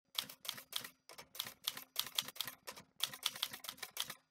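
Clacky keyboard keystrokes typing a web address, a steady run of about four clicks a second with a short pause about a second in.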